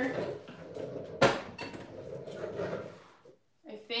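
Ceramic jug and other pieces being moved around on a table, with handling and shuffling noise and one sharp clunk about a second in as something hard is set down.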